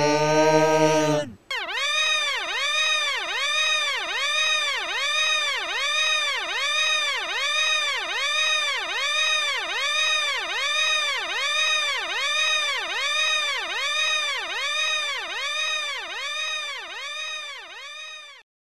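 A loud, long yell ends abruptly about a second in. It is followed by a buzzy electronic warbling tone whose pitch swoops down and back up about twice a second, repeating evenly and fading out near the end.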